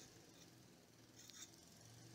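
Near silence, with faint scraping of a spatula pushing wet soil into a small moisture container.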